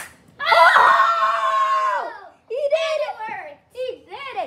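A sharp crack as a mini hockey stick hits a small ball, right at the start, then a child's long held yell of excitement lasting about two seconds, followed by more excited shouting.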